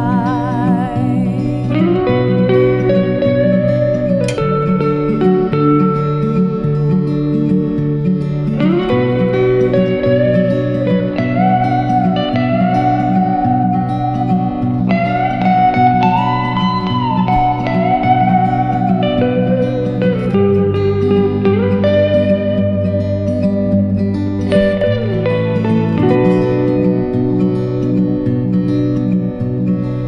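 Instrumental guitar break: a semi-hollow electric guitar plays a lead solo with bent and sliding notes over a steadily strummed acoustic guitar.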